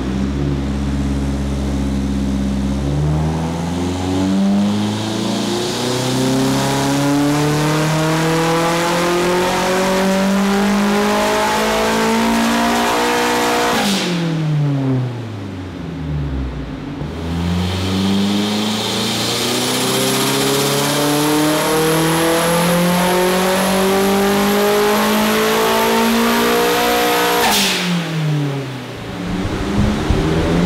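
Turbocharged Nissan S13 Silvia engine with a straight-piped exhaust on a chassis dyno: it idles briefly, then pulls steadily up through the revs for about ten seconds, drops back sharply off the throttle, and makes a second long pull before falling back again near the end. A thin high whistle rides over the top of each pull.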